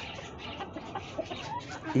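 Chickens clucking faintly over a low, steady background hiss.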